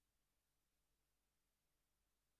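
Near silence: a faint noise floor after the closing music has stopped.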